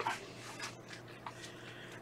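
Quiet room tone with a couple of faint, soft ticks, from fly-tying materials being handled at the vise.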